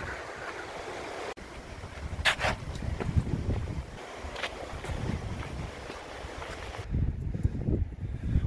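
Wind buffeting a handheld camera's microphone outdoors: a gusty low rumble with a steady hiss, broken by a brief dropout about a second and a half in.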